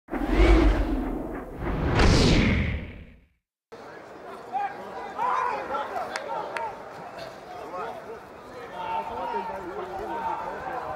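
Broadcast ident sound effect: two loud whooshing sweeps, the second about two seconds in, dying away by about three seconds. After a brief cut to silence comes stadium crowd ambience with voices murmuring and a couple of sharp clicks.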